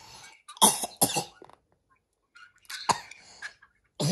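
A young child coughing in short sharp bursts: two close together about half a second in, and another a little before the end.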